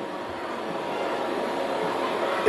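Steady background noise of the hall during a pause: an even hiss and rumble with no distinct events, growing slightly louder.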